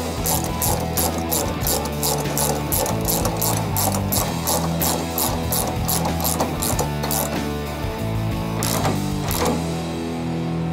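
Socket ratchet wrench clicking in quick, even strokes, a few clicks a second, as it tightens the mounting bolt of a coilover shock. The clicking stops about three-quarters of the way through. Background music plays underneath.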